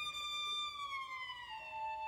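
Solo violin holding a high sustained note, then sliding slowly down in pitch about a second in and settling on a lower held note. Near the end a second, lower sustained tone enters beneath it.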